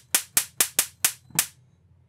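Cheap 1000 kV high-voltage arc generator module, run at 3.7 V, sparking across its electrode gap: about six sharp snaps at uneven intervals over a second and a half, then it stops.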